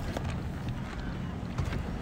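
Wind rumbling on the microphone over a steady outdoor hiss, with a couple of faint knocks.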